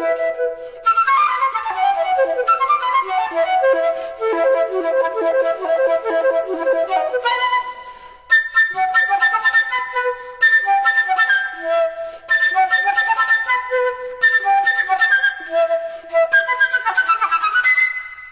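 Flute music: a flute playing quick runs of notes in short phrases, with brief pauses between them.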